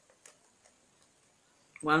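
A few faint, scattered clicks in a quiet pause, then a man's voice begins near the end.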